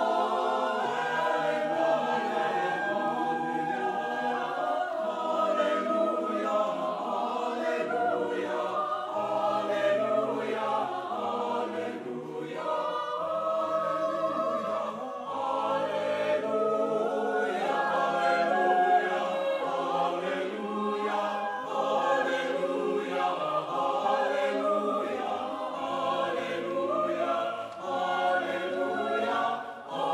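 Mixed choir of sopranos, altos, tenors and basses singing a piece in several parts, the voices moving together at an even level with a brief softening near the end.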